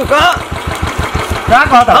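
Royal Enfield single-cylinder motorcycle engine idling with a steady, even low beat, under men's voices.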